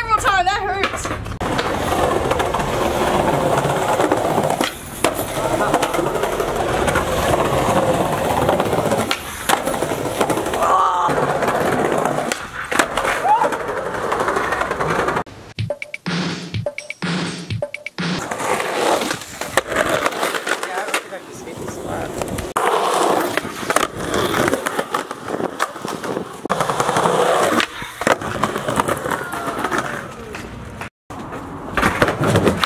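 Skateboard wheels rolling over rough concrete pavement, with sharp clacks and landing impacts from tricks scattered throughout. About halfway through, the rolling stops briefly for a quieter stretch.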